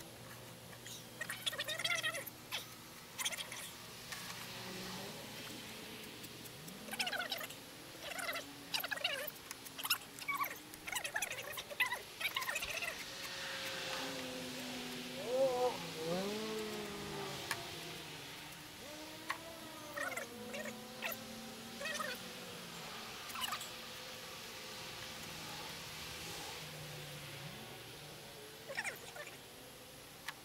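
Quiet handling sounds of Bondo body filler being worked into the corner of a van's step: scattered clicks and scrapes, with several wavering whine-like sounds from about a third of the way in.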